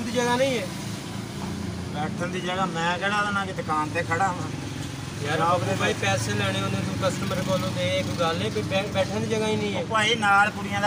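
Men talking back and forth, over a steady low engine hum.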